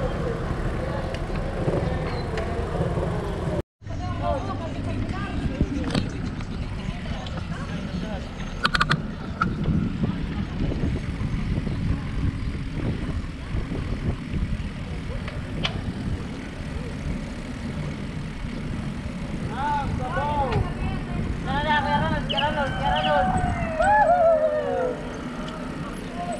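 Steady wind and road rumble on a camera riding with a group of cyclists on a concrete road, cut by a brief dropout about four seconds in. Riders' voices call out near the end.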